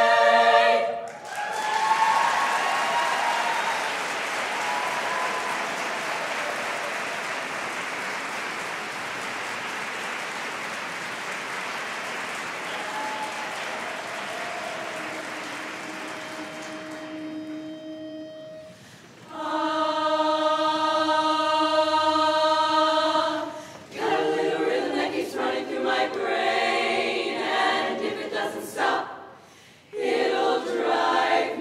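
A women's a cappella barbershop chorus ends a song on a chord about a second in, and the audience applauds for the next quarter minute or so, the applause slowly fading. The chorus then opens its next song with a held chord and goes on into quicker, rhythmic singing.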